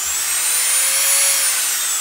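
Dremel rotary tool's electric motor running with a high-pitched whine. The pitch climbs to a peak about a second in, then starts to fall as the motor slows.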